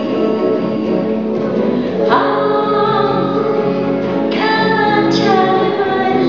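Live band music: a woman singing, accompanied by two electric guitars. Her sung phrases come in about two seconds in and again just after four seconds.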